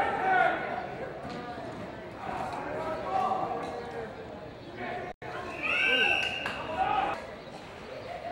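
Indistinct voices talking, with a brief total dropout in the audio about five seconds in.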